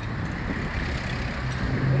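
Road traffic on a busy multi-lane avenue: cars and trucks running past in a steady rumble and tyre hiss, with a deeper engine hum coming in near the end.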